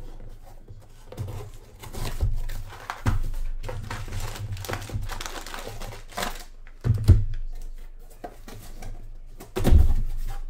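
Hands handling a trading-card box and its plastic packaging: irregular crinkling and rustling, with a sharp knock about seven seconds in and another near the end as things are set down on the table.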